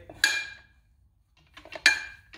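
Three-quarter-inch steel pipe clinking against the steel chuck jaws of a Ridgid 300 pipe threading machine as it is pushed through: one sharp ringing metallic clink, a quiet spell, then a quick run of clicks ending in a second ringing clink near the end.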